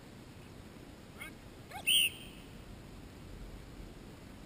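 A single short blast on a dog-training whistle about halfway through, one steady high note: the recall cue that calls the dog in to sit in front of the handler.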